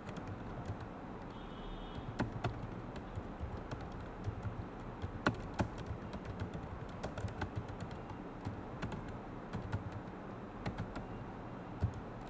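Computer keyboard typing: irregular, uneven keystroke clicks with short pauses between bursts, over a low steady hum.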